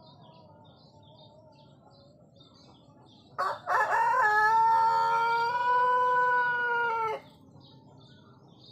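A rooster crowing once, a few seconds in: two short opening notes, then one long held crow of about three seconds that cuts off sharply. Small birds chirp faintly and repeatedly in the background.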